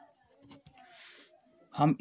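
Pen scratching softly on paper as words are written by hand, with a brief faint stroke about a second in. A man's voice starts just before the end.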